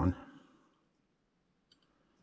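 The end of a spoken word, then near silence with a single faint click near the end.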